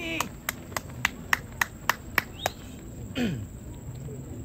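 Running footsteps on a synthetic track: a quick, even patter of sharp strikes, about three and a half a second, that stops about two and a half seconds in. A short call with steeply falling pitch follows a little after three seconds.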